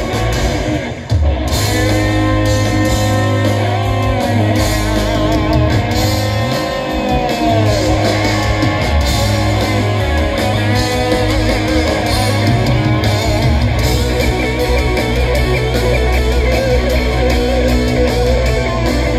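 Live rock band playing loudly, led by an electric guitar whose notes waver and bend in pitch over bass and drums. The sound drops briefly about a second in.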